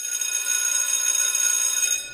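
Electric school bell ringing steadily with a shrill, high ring. It cuts in suddenly and stops at about two seconds.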